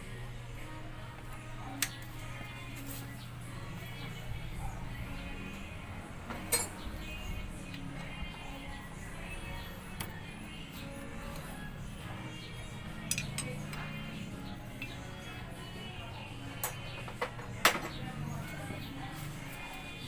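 A handful of sharp metal clinks, spaced seconds apart, as a socket tool works the camshaft sprocket bolts on a Honda Supremo motorcycle engine to loosen them, over faint background music.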